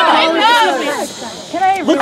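Raised voices arguing: a woman speaking loudly while others talk over her. There is a short hiss in a brief lull about halfway through, and then the voices pick up again.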